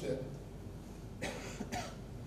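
A person coughing: two short, harsh bursts a little past the middle of a brief quiet spell.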